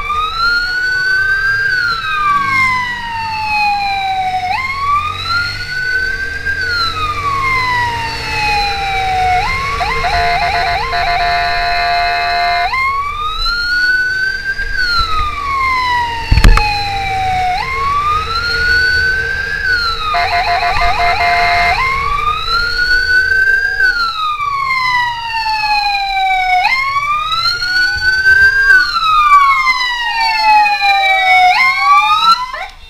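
Fire-response vehicle's electronic siren wailing loud and close, each cycle sweeping quickly up and then slowly down every two to three seconds, broken twice by a steady horn blast of two to three seconds. A single sharp knock comes about halfway through, and near the end a second siren wails out of step with the first.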